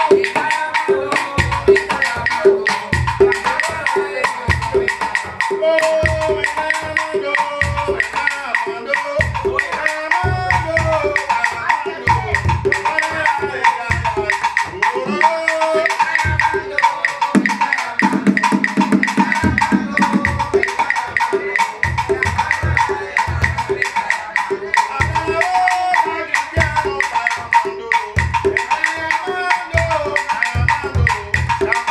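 Afro-Cuban cajón ensemble: wooden box drums and a conga played in an interlocking rhythm, deep bass strokes under sharp stick clicks on wood, with a voice singing over the drumming.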